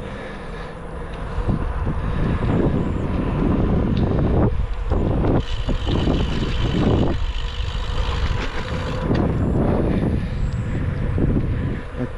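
Wind buffeting the microphone of a camera on a moving bicycle: an uneven low rumble that swells and drops, with a couple of brief lulls.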